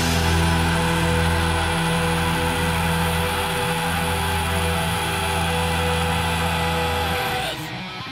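Heavy metal song with a six-string electric bass playing along: a long held chord over a sustained low bass note. About seven and a half seconds in, the chord cuts off and a quieter passage follows.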